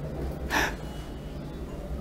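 A pause in talk with a low steady hum and one short, sharp intake of breath about half a second in.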